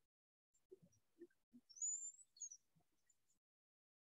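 Near silence, broken by one short, high, rising chirp about two seconds in and a few faint low blips before it.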